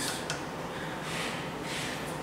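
Quiet room tone: a low steady hum, with two soft hisses about a second in and near the end.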